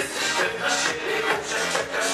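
Disco polo dance music played live by a band through a PA, with a steady dance beat.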